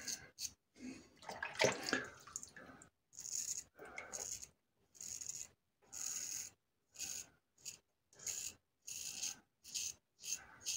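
Adjustable double-edge safety razor (Parker Variant with an Elios stainless blade) scraping through lathered stubble on the cheek, in short rasping strokes about one a second. About a second in there is a louder, fuller burst of noise.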